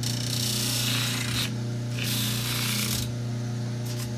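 Rubber recoil pad being ground on the spinning wheel of a Baldor bench grinder: two stretches of rasping grinding, each about a second to a second and a half long, as the pad is pressed to the wheel, over the steady hum of the running motor.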